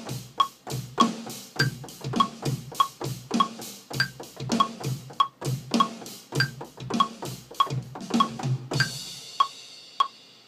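A drum beat played on a software drum kit from a MIDI keyboard, over a steady metronome click. Near the end a cymbal rings out and the beat stops while the clicking carries on.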